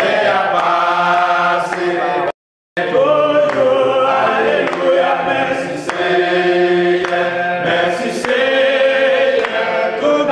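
A congregation singing a worship song together, many voices holding long notes in chorus. The sound cuts out completely for about half a second a couple of seconds in.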